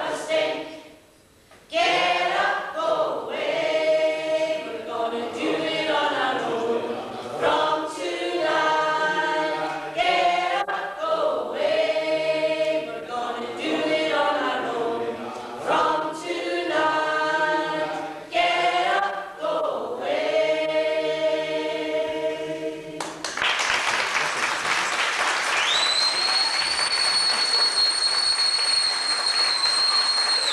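A stage cast singing together in chorus, phrase after phrase, with a short breath about a second in. The song ends about three quarters of the way through and applause breaks out, and a long, steady, shrill whistle holds over the applause near the end.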